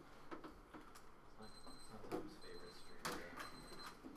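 Faint, scattered clicks and knocks of things being handled at a lectern and desk, with a louder knock about three seconds in.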